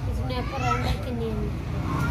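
A boy speaking softly over a low, steady background hum.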